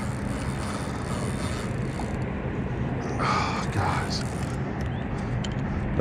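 Steady low engine hum under a rushing wind-and-water noise, with a short voice sound about three seconds in.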